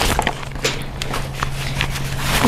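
Nylon stuff sack of a Klymit LiteWater Dinghy rustling and crinkling as it is handled and folded, a run of small crackles and scrapes.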